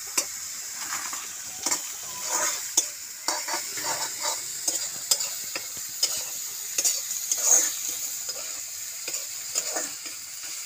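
Greens frying in oil in a black kadai, with a steady sizzle, while a metal spatula scrapes and knocks against the pan in quick, irregular stirring strokes.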